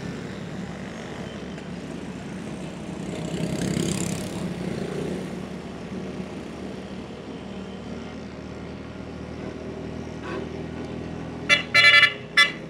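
Steady engine and road noise heard from inside a moving car, swelling briefly about four seconds in. Near the end a vehicle horn sounds in a few short toots.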